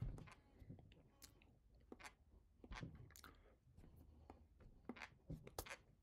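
Near silence with faint, scattered clicks and smacks from a person signing close to the microphone.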